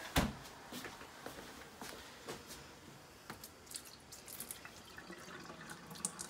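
A knock just after the start, then milk poured from a plastic gallon jug into a stainless-steel sink: faint, irregular splashing and dripping.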